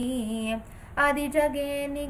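A female voice chanting Sanskrit verses in a melodic recitation, holding and gliding between notes. It breaks off briefly at about half a second in and resumes about a second in on a long held note.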